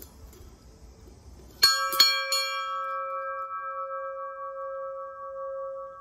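A large hanging bell rung by pulling its rope: the clapper strikes three times in quick succession about a second and a half in, the first two loudest. The bell then rings on with a steady hum that slowly fades.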